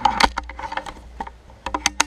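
Mechanical clicks and knocks from the Anschütz Hakim underlever air rifle being worked between shots, as in cocking and loading: a quick cluster of sharp clicks at the start, scattered clicks after it, and another cluster near the end.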